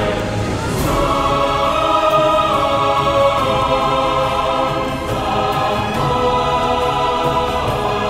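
Background music: a choir singing long held chords with orchestral accompaniment.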